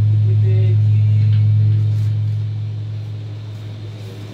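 Electric guitar through an amplifier holding a low, steady note that slowly fades away over the last couple of seconds.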